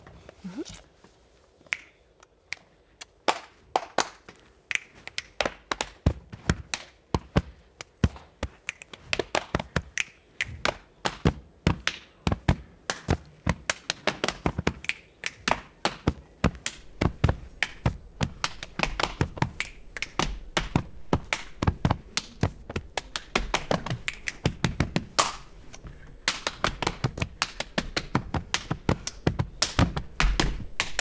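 Two people playing body percussion (body music): hand claps and slaps struck on the body, sparse at first and soon building into a fast, dense rhythm.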